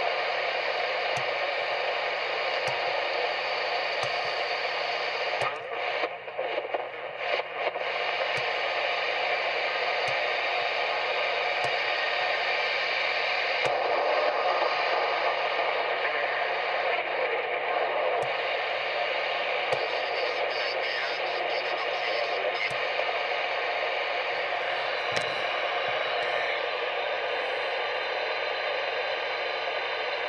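Realistic TRC-433 CB radio receiving steady band static through its speaker, with the squelch open, as it is stepped up through the channels. The hiss thins briefly a few seconds in, and faint ticks come about every second and a half.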